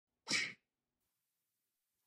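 A single short, breathy burst of noise, about a third of a second long, starting about a quarter of a second in.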